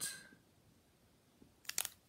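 Mostly quiet handling, then near the end a brief crinkle of a foil trading-card pack wrapper as it is handled and set down on a table: two or three short sharp clicks.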